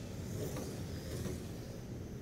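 Radio-controlled Traxxas Slash trucks running laps on an indoor oval, a steady mix of motor whine and tyre noise echoing in the building.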